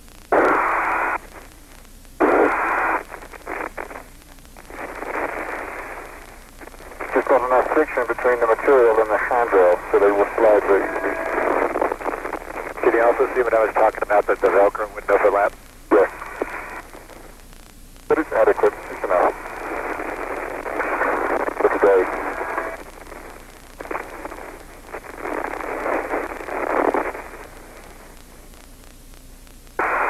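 Voices over the spacewalk radio loop, thin and narrow like a two-way radio, in stretches of one to several seconds with hiss in the gaps between transmissions.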